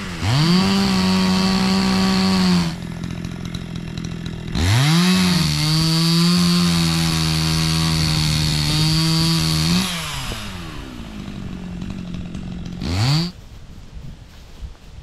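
Two-stroke chainsaw run at full throttle in two long stretches while cutting wood, dropping back toward idle between them, with one last short rev near the end. The second stretch runs at a slightly lower pitch than the first.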